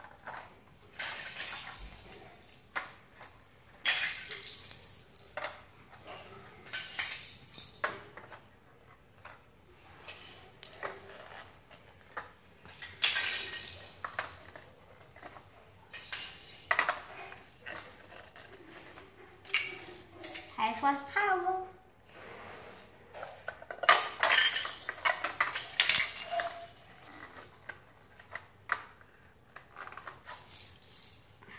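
Small hard plastic toy figures clattering and clicking as they are picked out of a pile and pushed onto the pegs of a plastic base, in irregular bursts of rattling.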